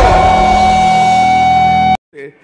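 Live rock band holding a sustained chord that rings steadily after a low hit at the start, then cuts off suddenly near the end.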